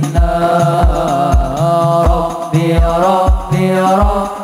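Hadroh ensemble performing sholawat: male voices singing a devotional melody in unison over frame drums (rebana), with deep drum strokes keeping a steady rhythm.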